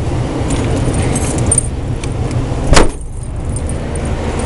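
Steady low outdoor rumble, with light metallic jingling in the first half and one sharp knock about three seconds in.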